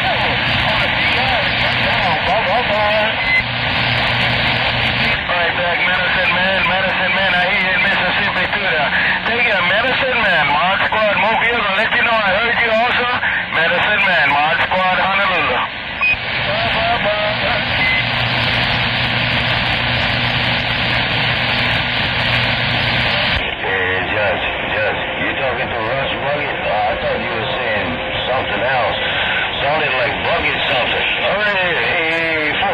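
Radio receiver audio on the 27 MHz CB band: steady static hiss with weak, garbled voices of distant stations wavering under it, too distorted to make out. About 23 seconds in, the static's tone turns duller.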